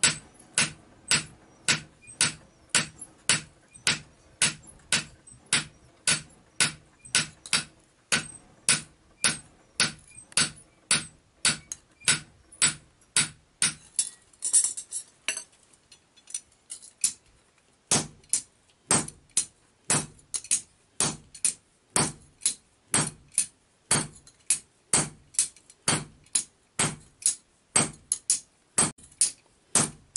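Hand hammer striking a hot steel axe head on an anvil, about two sharp metallic blows a second. The blows stop for about two seconds just past the middle, then resume at the same steady pace.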